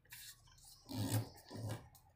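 Sheet of origami paper rustling and being creased by hand as it is turned over and folded, in three short bursts.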